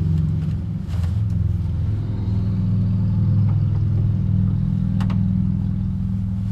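Vehicle engine idling with a low, steady rumble, with a couple of faint clicks over it.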